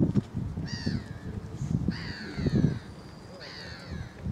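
A bird calling three times, each call a harsh falling note, the middle one the longest, over low rumbling noise.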